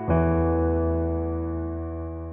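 Background music: a soft electric piano chord struck right at the start, its notes held and slowly fading away.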